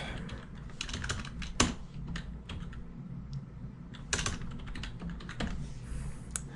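Typing on a computer keyboard: a run of irregular keystroke clicks over a faint steady low hum.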